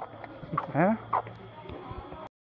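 Mostly quiet outdoor background, broken by a short questioning 'hain?' from a man, its pitch rising sharply, about a second in.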